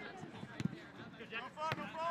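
Voices calling out across a soccer pitch during live play, with two sharp thumps of the ball being kicked, about half a second in and near the end.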